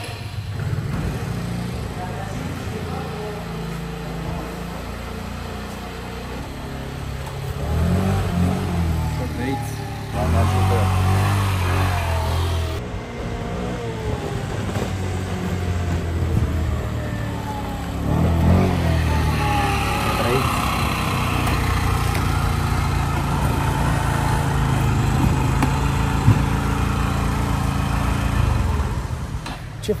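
Small 50cc scooter engine (SYM Jet 14) running and being ridden on a road test after its service. The engine note rises in pitch twice as it revs and pulls away.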